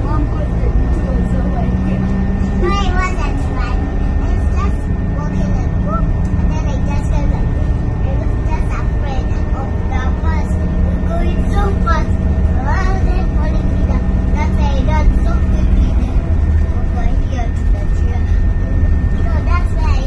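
Steady low engine and road rumble inside a moving van's passenger cabin, with children's voices talking now and then over it.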